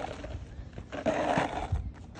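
Skateboard wheels rolling over asphalt and across a jacket, a gritty rumble that grows loudest about a second in.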